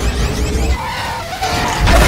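Film sound effect of a TIE fighter's engine howl, with pitch sliding as it races past, over orchestral score; it gets louder just before the end as the fighter hits the ground.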